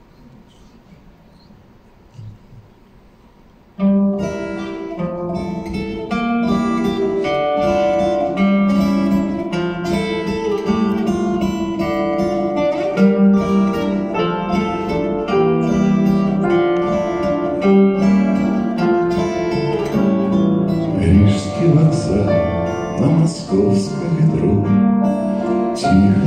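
A quiet pause of about four seconds, then an acoustic guitar and a piano start together and play an instrumental introduction to a song.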